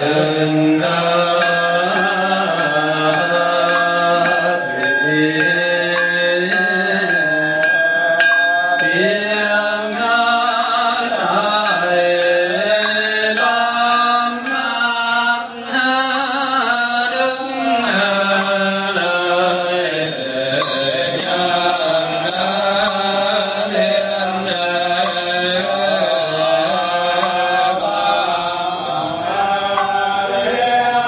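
Buddhist monks chanting a slow melodic chant that moves in small steps of pitch without break. A thin, steady high tone holds for several seconds near the start.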